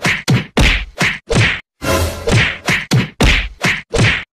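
A rapid string of about ten short, loud whack-like hits, each chopped off into dead silence before the next. The hard cuts point to a comedy sound effect edited over the clip rather than live sound.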